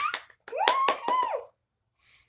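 A child clapping his hands several times while vocalizing in a high-pitched, squeaky voice; both stop about one and a half seconds in.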